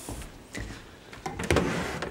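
A wooden dresser drawer sliding open with a short rush of noise about one and a half seconds in, after a couple of light knocks.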